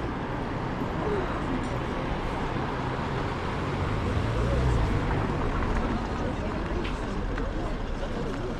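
City street ambience: cars driving past close by, the nearest one loudest about halfway through, under a background murmur of people talking.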